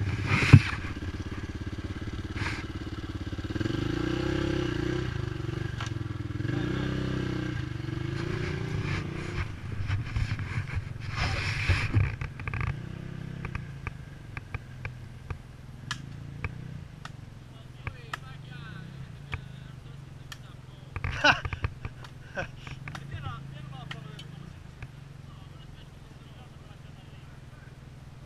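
Dirt bike engine running, revving up and down several times in the first ten seconds, then settling to a lower steady run with scattered light clicks.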